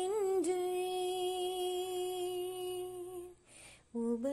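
A solo woman's voice singing a Tamil Christian song unaccompanied, holding one long steady note for about three seconds, then a short breath just before the next phrase starts at the end.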